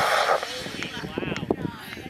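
A model rocket motor's hiss, fading and then cutting off about half a second in as the motor burns out. Excited voices of onlookers follow.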